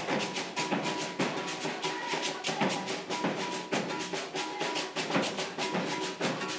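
Maracatu de baque virado percussion with no singing: alfaia drums beaten in a quick, steady rhythm, with an abê gourd shaker rattling along.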